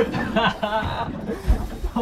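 A man chuckling and laughing, with a sharp low thump about one and a half seconds in.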